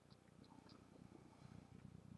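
Near silence: room tone with a faint, uneven low rumble.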